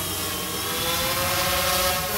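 Quadcopter drone propellers buzzing: a steady whine with many overtones over a hiss, its pitch sagging slightly and then climbing a little.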